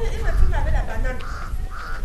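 Indistinct voices outdoors, followed by two short, harsh, rasping calls, one about a second in and one near the end.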